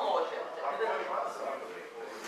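Indistinct talking: voices in conversation in a room, no clear words.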